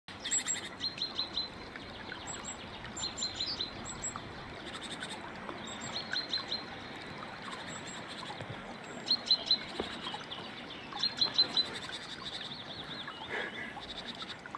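A songbird singing short phrases of three or four quick, high notes, repeated every couple of seconds, over a steady hiss of light rain.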